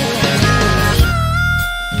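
Blues-rock band playing an instrumental passage: guitar over bass and drums. About halfway through, a harmonica comes in with a long held note that bends up in pitch.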